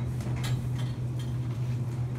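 Steady low hum inside a stopped elevator car, with a couple of faint clicks.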